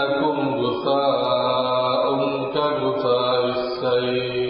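A man's voice chanting Arabic in a slow, drawn-out melodic intonation, holding long notes with only small shifts in pitch.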